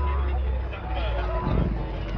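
Background chatter of a crowd of people over a low rumble, which drops away about two-thirds of a second in, with voices coming through more clearly in the second half.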